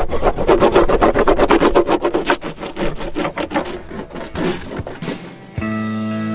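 A bar of surf wax rubbed back and forth on a surfboard deck in quick scraping strokes, about six a second, which slow and then stop. About five and a half seconds in, a sustained guitar chord of music starts abruptly.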